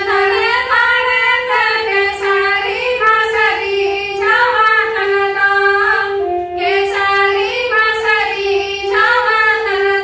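Three women singing a Santali dong song together, in three phrases with short breaks between, over a steady instrumental melody line that holds and steps between notes underneath.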